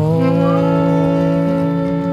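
A band's final chord on acoustic instruments, struck at the start and held, with several pitches sounding together and one sliding up in the first half-second.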